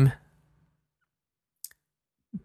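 A voice trails off, then near silence broken by a single short click about one and a half seconds in.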